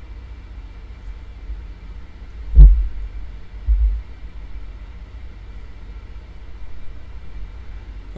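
Two dull knocks picked up by a desk microphone, a loud one about two and a half seconds in and a softer one about a second later, over a steady low hum.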